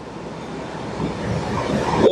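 A long, rushing breath drawn into a close microphone by a Quran reciter between phrases, growing steadily louder.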